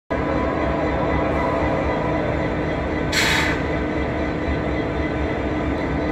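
Diesel locomotive engine running at idle nearby, a steady low rumble. A short hiss about three seconds in.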